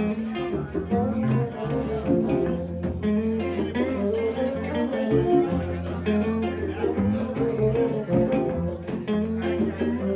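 Live acoustic guitar and fiddle playing an instrumental passage together, over a steady low bass line.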